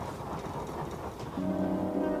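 Low, quiet rumble, then a sustained chord of film-score music comes in about one and a half seconds in and holds.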